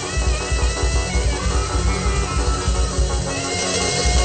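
Worship band music: a heavy, pulsing bass and drum beat comes in at the start, under a held melodic lead line.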